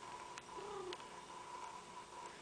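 A house cat making a faint, short, soft low call about half a second in, with a couple of light clicks, over a steady faint hum.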